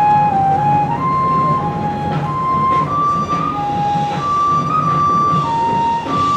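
High school marching band playing a slow passage: a single melody of long held notes stepping up and down in pitch, over soft low accompaniment.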